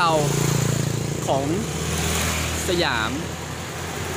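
A motor engine running with a steady low drone beneath a man's speech, slightly louder at the start and easing off toward the end.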